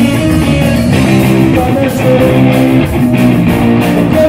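A live rock band playing loudly: electric guitar and bass chords ring over drums, with no vocals.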